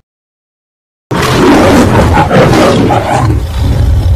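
A loud, harsh angry roar sound effect that starts abruptly about a second in after silence and carries on unbroken.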